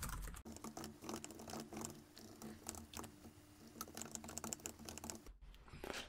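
Computer keyboard typing: a fast, irregular run of faint key clicks that stops shortly before the end.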